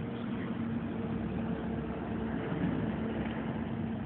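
A steady, low mechanical hum, like an engine or machine running, with a faint constant tone over a background haze.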